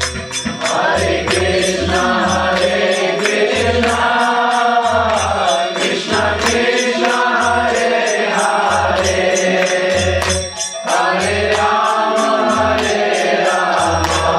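Kirtan: voices chanting a devotional mantra in melody, over a low drum beat about once a second and steady strikes of hand cymbals. The singing breaks briefly about ten seconds in, then resumes.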